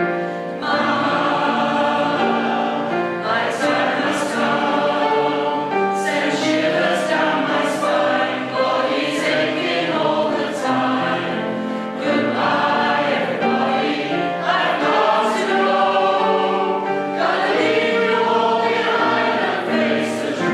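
Mixed choir of men's and women's voices singing a song in harmony, the full choir coming in about half a second in.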